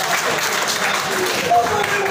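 Audience applause, a dense patter of clapping, with voices over it.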